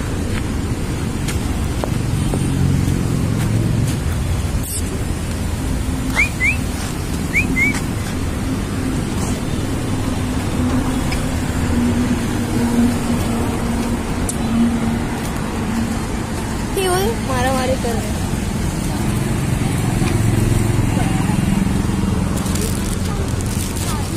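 Street ambience: a steady low rumble of road traffic with faint voices in the background. A few short high chirps come about a third of the way in, and a brief wavering cry about three-quarters of the way through.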